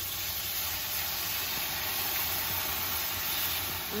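White wine poured into a hot frying pan of chicken cutlets, sizzling and hissing steadily as it hits the hot oil, where its alcohol is boiling off.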